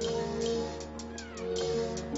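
Background music of held, sustained notes over quick, high ticking percussion, with a short falling glide about a second in.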